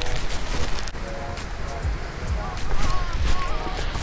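Background music with short held notes, over wind rumbling on the microphone.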